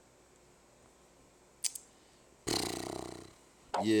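A rough, heavy breath out, a sigh, close to the phone's microphone. It starts abruptly about two and a half seconds in and fades over nearly a second. Two faint clicks come just before it, and a man starts speaking near the end.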